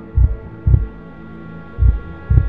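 Slow heartbeat on a soundtrack: deep thumps in lub-dub pairs, one pair and then the first beat of the next, over a steady low hum with faint held tones.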